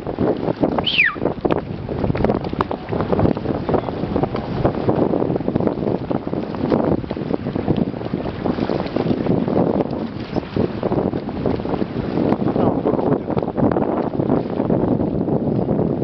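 Strong wind buffeting the microphone, a loud, gusty rushing noise that runs throughout and covers the sound of the choppy water.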